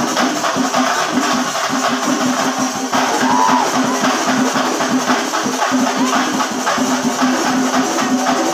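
Singari melam percussion ensemble: chenda drums beaten in a fast, driving rhythm with hand cymbals clashing over them, loud and without a break.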